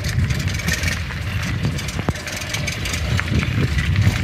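Cruiser bicycle with a wire basket rattling over a bumpy gravel road: a steady low rumble with scattered clicks and knocks.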